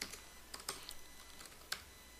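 Faint computer keyboard typing: a few separate keystrokes, spread out and irregular.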